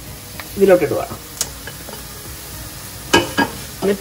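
Red chilli powder and coriander powder tipped into hot oil with onions, garlic and curry leaves in a pot and stirred with a spatula, the masala sizzling steadily. There is a single sharp click of the spatula on the pot about a second and a half in.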